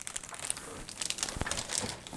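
Thin plastic wrapping crinkling as it is pulled off a fabric-covered hard carrying case, with a couple of dull knocks in the second half as the case is handled.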